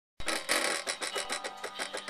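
Cricut cutting machine drawing with a pen fitted in its carriage: its motors drive the carriage and mat in a rapid, uneven run of clicks that starts abruptly a moment in.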